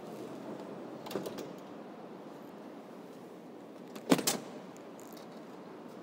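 The sliding side door of a 2016 Dodge Grand Caravan being opened by its handle: latch clicks about a second in, then one loud knock a little after four seconds as the door reaches its open position.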